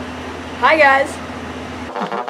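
A single short spoken word a little over half a second in, over a steady low hum.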